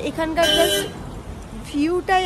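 A woman's voice, with a short car horn toot about half a second in, briefly louder than the voice.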